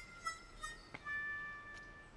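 Soft cartoon background music: a few sustained high notes, shifting to a new held chord about a second in.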